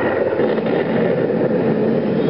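Recorded roar of an animatronic Tyrannosaurus played through the exhibit's speakers while the robot moves its head and opens its jaws: a loud, steady, low rumbling growl.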